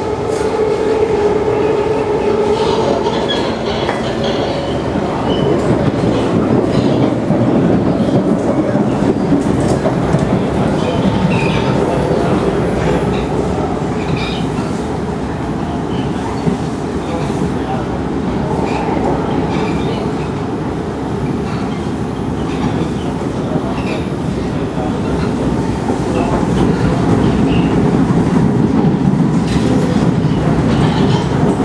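SMRT C151 metro train running between stations, heard from inside the carriage: a steady rumble of wheels on rail with scattered clicks, growing a little louder near the end.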